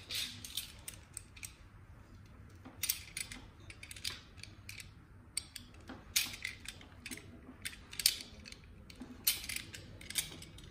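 A hand cutting tool snipping and crunching through the jacket and braided shield of a QED audio signal cable, in irregular clusters of sharp clicks with short pauses, the loudest about six and eight seconds in.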